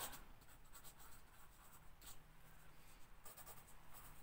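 A pen writing on paper, faint light scratching strokes at near-silent level.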